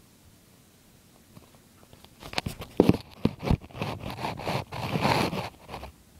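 Close rubbing, scraping and clicking against a handheld phone's microphone: a run of sharp clicks starts about two seconds in, loudest near the three-second mark, followed by a rough, steady scraping until just before the end.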